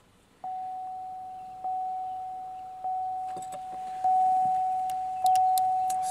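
Pontiac Aztek's dashboard warning chime, dinging at a steady pitch about every 1.2 seconds once power reaches the car, with a few faint clicks partway through.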